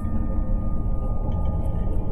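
Background music bed with no narration over it: a low, steady drone and a faint held higher tone.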